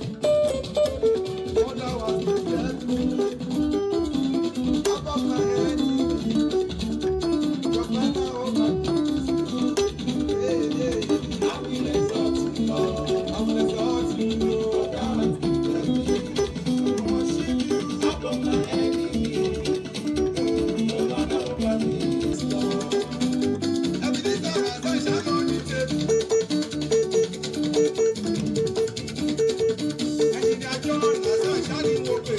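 Yamaha arranger keyboard played with both hands: a fast, repeating high-praise pattern of quick notes over a steady beat.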